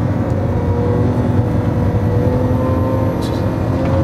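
Lamborghini Aventador LP700-4's 6.5-litre naturally aspirated V12 running on track, heard from inside the cabin, its note climbing slowly in pitch.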